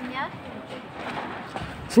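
Faint voices of people talking in the background, with a brief rising voice near the start, over low outdoor noise.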